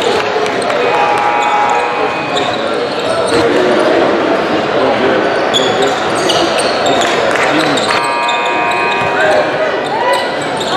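Live sound of an indoor basketball game: crowd chatter in a large, echoing gym, a basketball bouncing on the hardwood, and sneakers squeaking on the court about a second in and again near the end.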